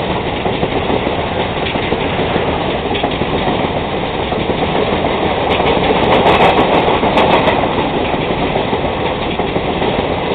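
Passenger coaches of an Indian Railways express rolling past at speed: a steady, loud rumble of wheels on rails. It swells with a run of sharp wheel clacks about six to seven seconds in.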